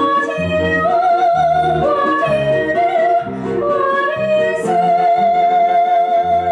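A young woman singing a slow melody with vibrato over an instrumental accompaniment of repeated low notes. Near the end she holds one long note.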